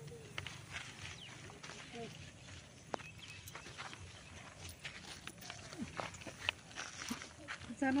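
Hands digging through dry paddy grain in basins: faint rustling with scattered small clicks, while voices murmur faintly in the background.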